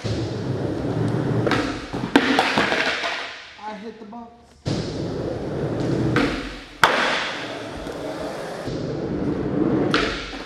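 Skateboard wheels rolling over a skatepark floor, cutting out briefly just before midway and coming back abruptly, with sharp cracks of the board popping and landing: the loudest about seven seconds in, another near the end.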